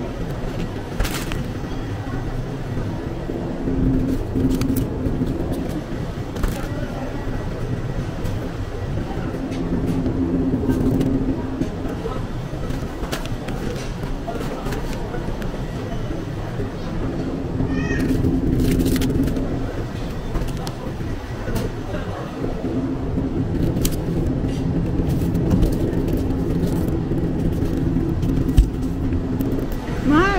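Shopping cart rolling over a tiled supermarket floor: a steady low rumble with scattered rattles and clicks, under indistinct voices.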